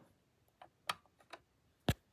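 Switch-hatch cover on a Lionel VisionLine Niagara model steam locomotive being pressed back into place: a few light clicks, then one sharper click near the end.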